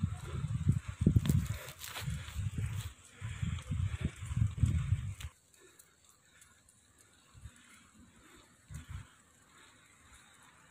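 Wind rumbling on a phone microphone mixed with a cyclist's heavy breathing while pedalling uphill, in irregular gusts for about five seconds. It then drops suddenly to a faint low rustle with a couple of soft bumps.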